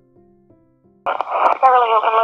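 Soft piano music fading out, then about halfway through a recorded 911 emergency call cuts in abruptly with line hiss and a voice starting to speak, thin and phone-like.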